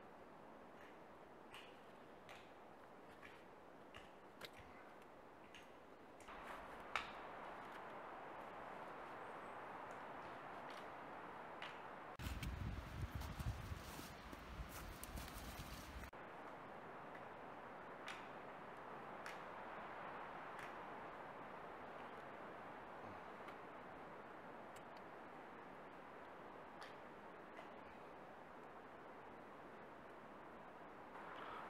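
Faint clicks and rustles of twine being wrapped and tied around a notched wooden stick, over a low steady hiss. A louder rushing noise comes in for about four seconds around the middle.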